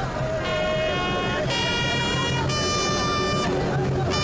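A brass bugle call sounded for military honours: three long held notes, each about a second, stepping from one pitch to the next, with crowd voices underneath.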